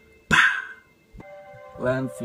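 A single short, sharp bark-like cry about a third of a second in. After a brief silence a steady synth tone from a hip-hop beat comes in, and a voice starts near the end.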